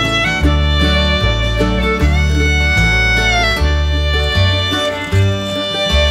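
Background music led by a fiddle playing a melody with sliding notes, over a guitar and a bass line that steps from note to note about once a second.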